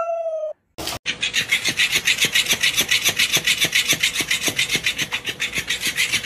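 A husky's howl tails off in the first half-second. Then, after a cut, a fast, even rasping scrape of about seven strokes a second starts about a second in and keeps going.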